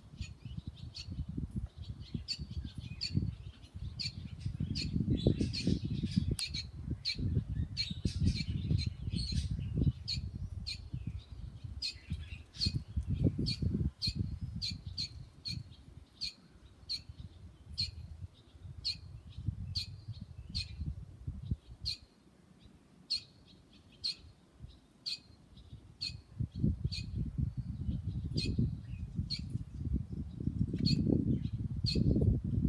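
Barn swallows chirping: short, sharp calls repeated about one or two a second, with a low rumble rising and falling underneath.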